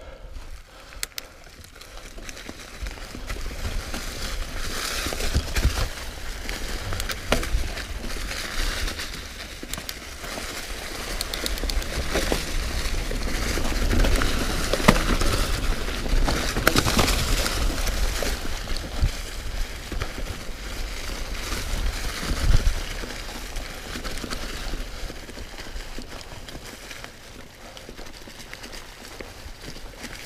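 Commencal Meta V4.2 mountain bike rolling fast over dry fallen leaves on a descent: a continuous crunching and crackling from the tyres, peppered with rattling clicks and with wind rumbling on the microphone. The noise swells with speed through the middle, and there is one hard knock about two-thirds of the way through.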